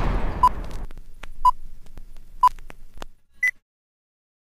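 Film countdown leader sound effect: short beeps about once a second, three at one pitch and a higher-pitched fourth, with faint clicks between them. A fading hiss runs under the first second, and the sound cuts to silence shortly after the last beep.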